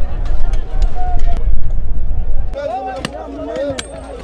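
Sledgehammers striking rock in a hand-dug cobalt mine, a string of sharp knocks throughout, with miners' voices shouting from about halfway. A heavy low rumble fills the first half.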